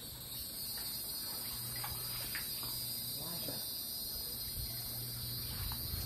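A steady, high-pitched drone of insects singing in the surrounding trees.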